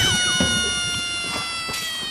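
Comic sound effect: one long high squeal that slowly falls in pitch and fades.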